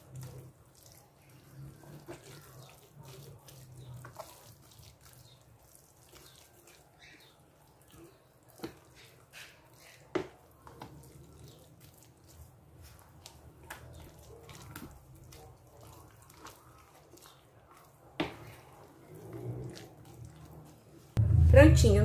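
Wooden spoon stirring thick, wet chicken-pie batter in a plastic tub: soft wet squelches with scattered short knocks and scrapes of the spoon against the tub, over a faint low hum.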